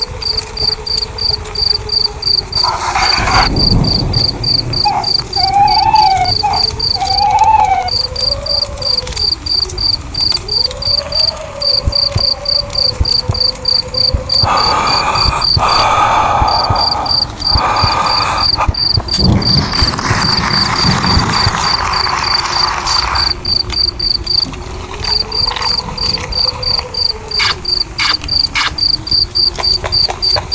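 Sleep-app mix of recorded cricket chirps, evenly pulsed at about three a second with a few short breaks, over a wavering insect whine. Other layered sounds fade in and out, mainly around 3 to 8 seconds in and again from about 14 to 23 seconds.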